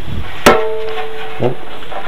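A single sharp knock of a hard object being bumped, about half a second in, ringing on with a steady tone for about a second before dying away.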